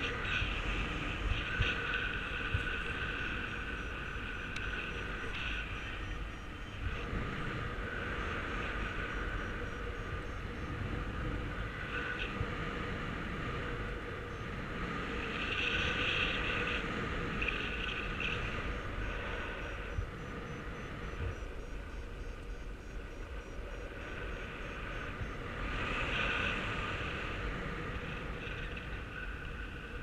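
Airflow rushing over the camera microphone of a paraglider in flight, a steady rumbling rush that swells twice. A faint high, rapid beeping runs beneath it.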